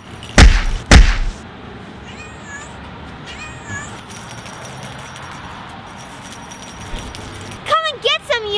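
Two heavy thumps about half a second apart near the start. After them come two faint, high meows a second apart, and a loud meow begins just at the end.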